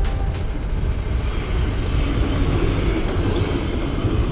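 A train passing over a level crossing close by: steady rumbling rail noise. Background music cuts off about half a second in.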